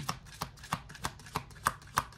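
A deck of tarot cards being shuffled by hand, the cards slapping together in sharp, evenly spaced clicks about three times a second.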